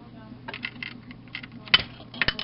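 Plastic Lego pieces clicking and clattering as the set's explosion feature is triggered and parts pop off, with one sharp clack about three quarters of the way in.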